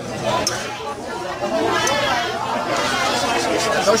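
People chattering in Portuguese, with a couple of sharp clicks.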